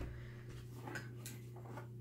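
A few faint clicks and rustles of gear being handled inside a fabric blind bag as a lanyard of game calls is pulled out, over a steady low hum.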